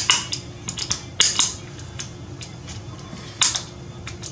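Sharp metallic clicks from an assembled AR-15 lower receiver's trigger group being function tested, with the hammer, trigger and safety selector being worked. The clicks come one at a time at uneven spacing, the loudest about a second in and again past three seconds in.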